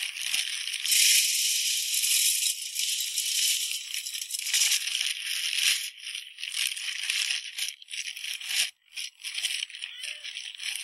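Chicken feed pouring from a paper feed sack into a metal chicken feeder, a steady rush of grains heaviest about a second in, mixed with the crinkle of the paper sack.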